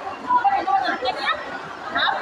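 Women talking together in conversation.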